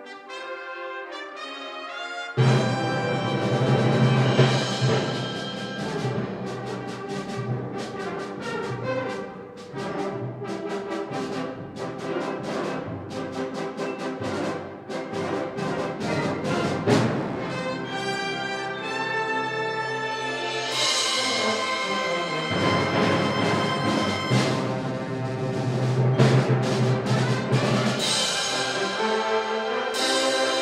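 Full concert band of woodwinds, brass and percussion with timpani playing a loud, brass-led passage. A lighter opening gives way to the whole band coming in about two and a half seconds in, with quick rhythmic accents through the middle and broad held chords from about two-thirds of the way through.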